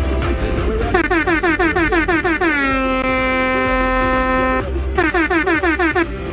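Loud dance music with a heavy bass under a DJ air-horn sound effect: a rapid string of short blasts, each falling in pitch, then one long blast that drops and holds for about two seconds, then another rapid string near the end.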